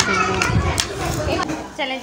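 Chatter of several people talking over each other, children's voices among them.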